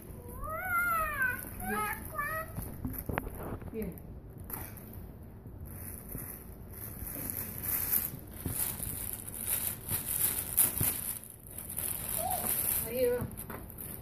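Cellophane basket wrap crinkling and rustling as it is pulled and handled, in dense bursts that grow louder in the second half. Near the start there is a short, high squeal that rises and falls in pitch.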